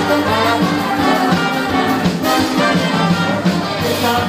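Live band music led by a brass section, trombone and trumpet playing a melodic line over the band.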